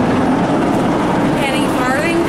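Steady, loud engine drone holding one low pitch, with a person's voice rising and falling near the end.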